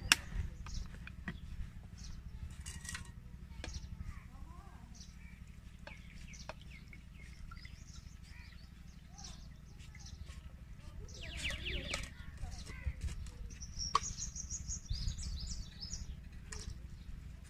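Scattered light clicks and knocks from handling a plastic blender jar, its lid and a steel bowl, over a low steady rumble. A run of high bird chirps comes in near the end.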